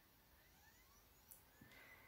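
Near silence: room tone, with a few very faint, short rising whistles.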